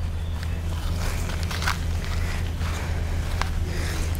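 Footsteps walking over grass and sandy ground, a few soft steps over a steady low hum.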